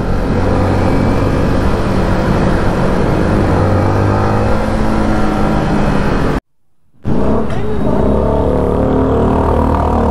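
Yamaha motorcycle riding in slow traffic: the engine runs with steady wind and road noise on the rider's camera microphone, and a bus runs alongside. The sound cuts out for about half a second six and a half seconds in, then a steady low engine hum resumes.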